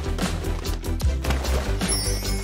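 Background music with light percussion and a pulsing bass line.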